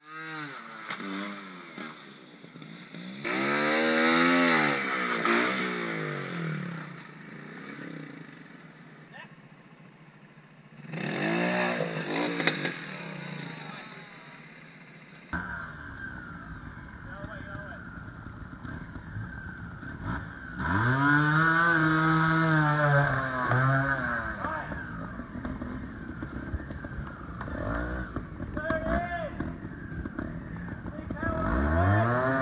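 Trials motorcycle engine revving in several bursts, its pitch rising and falling with each blip of the throttle as the rider works through a rocky section.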